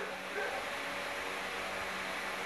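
Steady low hiss with a faint hum underneath: room tone.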